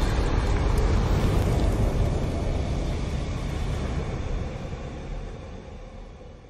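Logo-intro sound effect: a deep rumble, the tail of a fiery whoosh-and-boom, fading out slowly over several seconds.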